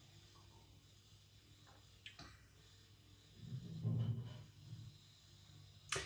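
A man taking a mouthful of stout from a glass and swallowing: faint mouth and glass clicks about two seconds in, then a short low hum from his throat about four seconds in.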